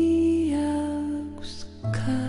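Slow, soft music with long held notes. One note steps down about half a second in, and a new low note comes in near the end.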